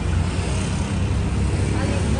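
Steady low rumble of wind buffeting a phone's microphone on a street, with faint voices near the end.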